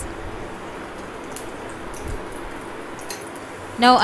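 Cashew nuts frying in a little hot ghee in a small pan: a steady, even sizzle with a couple of faint pops.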